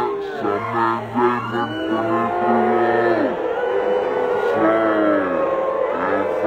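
A song with a sung voice holding long notes that slide down at their ends, over a steady low tone.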